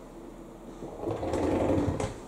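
A door or closet door being moved: a rattling, rumbling mechanical sound that builds about a second in and stops abruptly.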